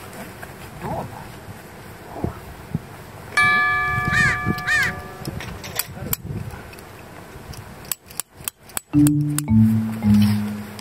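Comic sound effects added in editing: a held chime-like electronic tone that wobbles in pitch twice, then a few low, blocky synth notes start near the end.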